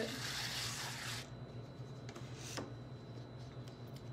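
A tool scraping and wiping leftover buttercream off the edge of a cake board: a rough rubbing noise that stops a little over a second in, then only faint handling sounds.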